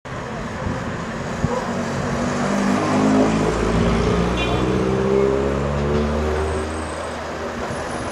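Cars driving past one after another on a street, the engine note rising and then falling as each goes by. The sound is loudest between about three and five seconds in.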